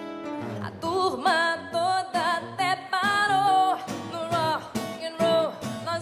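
A woman's voice singing a melody, holding notes with vibrato, over two acoustic guitars played in a steady rhythm.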